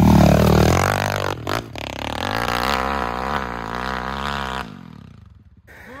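Single-cylinder four-stroke pit bike engine revving hard up a steep dirt hill, its pitch wavering up and down with the throttle as it pulls away. It stops abruptly about four and a half seconds in as the bike goes down on the slope.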